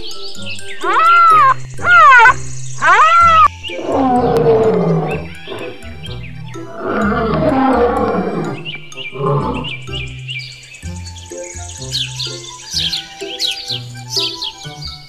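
A rhinoceros gives four short squealing calls, each rising and then falling in pitch. Lion roars and growls follow for about six seconds, over light background music, and quick high chirps come in near the end.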